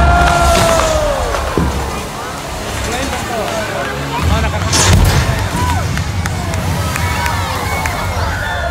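Pyrotechnic explosion as a stunt seaplane crashes into the water, followed by the audience shouting and cheering, with a second bang about five seconds in.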